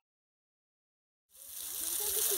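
Dead silence for more than the first second, then outdoor sound fades in. It is a steady hiss with a low, uneven rumble, typical of wind on the microphone, and a faint voice begins near the end.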